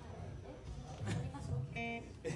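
Electric guitar picked lightly, a few loose notes, with a short held pitched tone near the end; voices murmur underneath.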